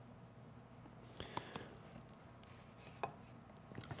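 Quiet room with a few faint, light taps and knocks of kitchen work: a small cluster about a second in and a single tap near three seconds.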